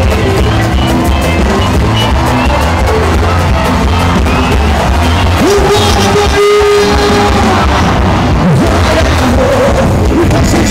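Loud live band music with a heavy bass beat and a singer, who slides up into a long held note about five and a half seconds in while the bass drops out for a moment.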